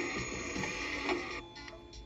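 VTech Thomas & Friends Learn & Explore Laptop toy playing a machine-like electronic sound effect with music through its small speaker. About one and a half seconds in it drops to quieter steady tones.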